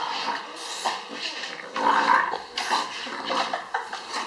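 English bulldog making play noises in uneven bursts, loudest about two seconds in, as it play-fights with a person's hands.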